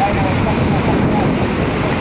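Waves breaking on the shore with wind buffeting the microphone: a loud, steady rush.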